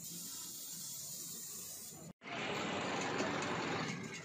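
Paint spray gun hissing steadily as it sprays a carved plaster facade. About two seconds in it cuts off abruptly and a louder, rough steady noise takes over.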